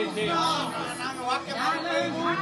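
Several people talking and calling out over one another, with music playing underneath.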